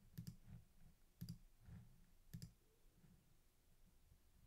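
Faint computer mouse clicks: three quick double clicks, about a second apart.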